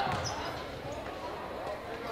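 A basketball bouncing on a hardwood gym floor, one low thud just after the start, with voices of players and onlookers in the gym.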